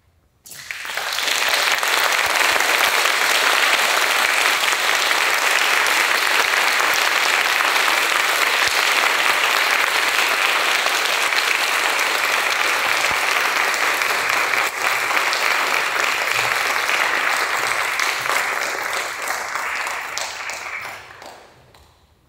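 Audience applauding after the last note. The applause starts about half a second in, holds steady, and fades away near the end.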